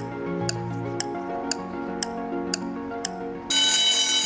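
Quiz-show countdown timer music: held synth notes with a clock tick twice a second. About three and a half seconds in, a loud, bright electronic ringing signal cuts in, marking the end of the 20-second discussion time.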